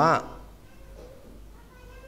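A man preaching over a microphone finishes a phrase at the start, followed by a pause of quiet room tone with a faint, brief high-pitched sound near the end.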